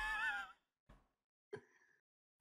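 A man's laughing sigh trails off in the first half second. Near silence follows, broken only by a faint click and a brief faint sound.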